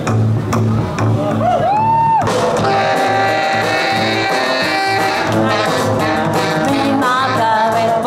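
A live rock-and-roll band playing: a woman singing over electric guitar, upright bass, drums and saxophone. A rising sung note about two seconds in gives way to the full band with a long held note through the middle, and the wavering vocal line returns near the end.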